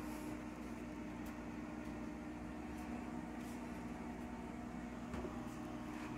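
Steady low machine hum with two held tones, under the faint clicks of a wooden drop-down door being swung shut on its metal hinges. The clearest click comes about five seconds in.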